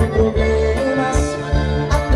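Live dance-band music: a keyboard melody over bass, with a steady beat.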